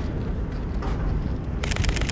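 Steady street rumble, then near the end a rapid run of sharp camera shutter clicks, about ten a second, as a burst of continuous shooting begins.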